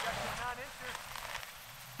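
A person's faint, brief voice, likely a laugh, over a light crackling, rustling noise.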